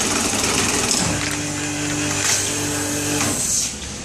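YS-390 vacuum skin packing machine lowering its pressure frame: a steady motor hum starts about a second in and stops after about two seconds, over a hiss.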